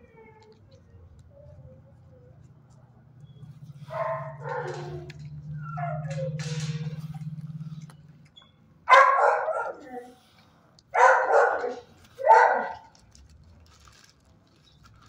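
Dogs in shelter kennels barking and yipping: a few shorter calls, then three loud barks in the last five seconds. A low, steady hum sits under the first half.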